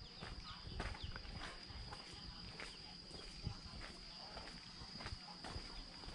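Faint footsteps of a person walking along a path, about two steps a second, over a steady high-pitched drone.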